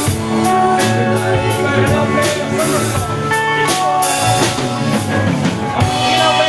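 A live band plays an instrumental passage between sung lines, with drum kit and guitar prominent and regular drum hits throughout.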